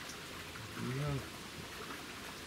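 A man's voice gives one short murmur a little after halfway, over a steady outdoor background hiss.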